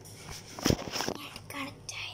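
A dull thump a little over half a second in and a lighter knock at about one second, with a few faint words near the end.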